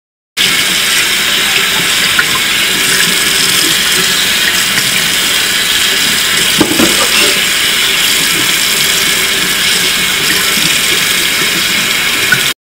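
Tap water running hard into a stainless steel sink while hands are rinsed under the stream, a loud, steady rush that starts and stops abruptly. A single short knock sounds about halfway through.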